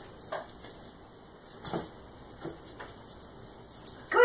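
Quiet room tone with a few faint, brief taps and rustles.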